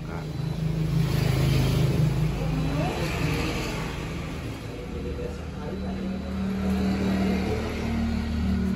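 An engine running, its speed rising and falling: a low steady hum that gets louder about a second in, drops back around three seconds, and comes up again at a higher pitch near the end.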